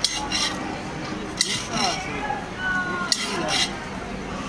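Metal spoon scraping and clinking inside a tall stainless-steel tumbler as puffed rice (jhal muri) is stirred and mixed. The clinks come in short clusters every second or so.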